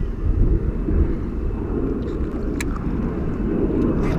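Steady low rumble of wind buffeting the microphone over open water, with a single sharp click about two and a half seconds in.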